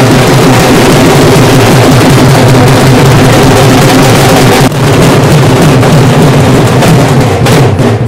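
Dhol drums beaten hard in a loud, dense, steady groove, the recording overloaded and distorted, with a brief break about halfway through.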